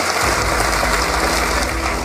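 Studio audience applauding, a dense even clatter of clapping.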